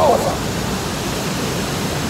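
Steady rushing of river water pouring over the rock cascades of Fourteen Falls, an even noise without breaks.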